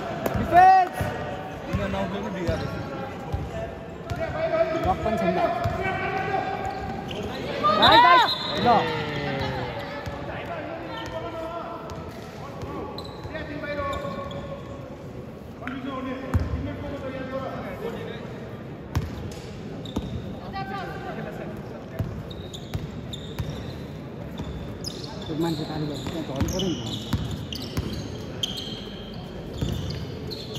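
A basketball bouncing on a wooden court as it is dribbled, with repeated sharp knocks through the whole stretch. Voices shout over it, loudest in one long rising-and-falling shout about eight seconds in.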